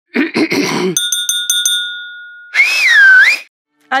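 A short noisy burst. Then a chime is struck about six times in quick succession, its clear ringing tone fading over a second or so. Near the end a short whistle-like tone dips and rises in pitch.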